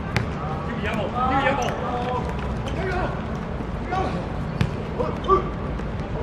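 A football being kicked on an outdoor hard court: a few sharp thuds, the loudest near the end. Players' and onlookers' voices call out throughout.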